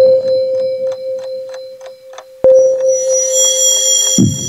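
Dark electronic track played live on a Roland TR-6S drum machine and MC-101 groovebox: a clock-like ticking about four times a second over a held synth tone and a low bass pattern. A sharp hit opens it and another comes about two and a half seconds in, after which high tones come in.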